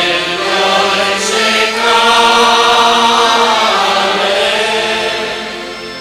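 Many voices singing a slow hymn together in long, held notes. The phrase fades away near the end.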